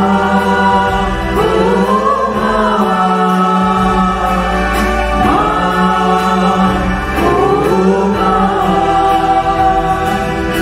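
A small mixed choir of men's and women's voices singing a hymn into microphones, with acoustic guitar and steady held-chord accompaniment. New sung phrases begin about every two to three seconds over the sustained notes.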